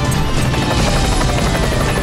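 Dramatic TV intro music layered with a helicopter rotor sound effect, steady and loud, with a slowly falling tone running through it.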